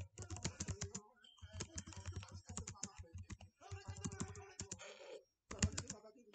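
Computer keyboard being typed on in quick bursts of keystrokes, with short pauses between runs, a brief silence about five seconds in, then a last loud flurry of keys.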